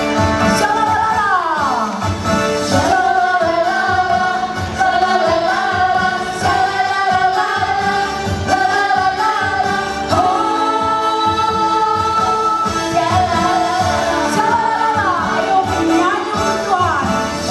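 A group of women singing a worship song together through handheld microphones, over amplified backing music with a steady beat.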